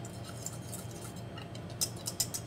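Wire whisk lightly ticking against a stainless steel bowl while whisking a thick garlic and olive-oil dressing, with a quick run of clinks near the end, over a low steady hum.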